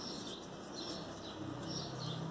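Background birdsong: repeated short, high chirps, joined near the end by a low cooing call.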